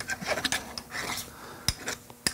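A steel burnisher rubbed along the curved edge of a steel card scraper to draw up a hook: short strokes of metal scraping on metal, with a couple of sharp clicks in the second half.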